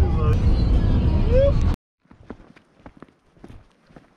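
Road noise inside a moving car's cabin, a loud steady low rumble, with a brief rising voice near the end of it. It cuts off suddenly less than two seconds in, leaving faint, scattered footsteps on a paved path.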